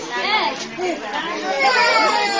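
Several people talking over one another in high-pitched voices, chattering and calling out.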